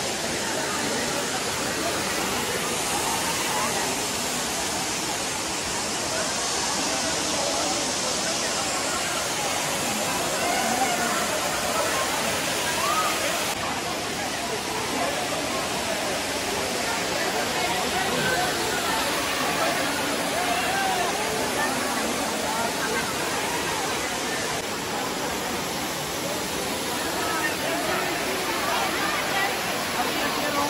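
Steady rush of a waterfall, with many people's voices chattering over it.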